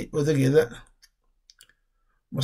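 A woman speaking in Somali for about the first second, then a pause with a few faint clicks.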